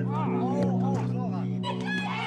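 High-pitched children's voices calling out over background music with sustained low tones.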